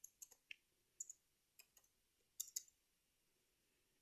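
Faint computer keyboard keys clicking as a number is typed: about seven short, light clicks scattered over the few seconds against near silence.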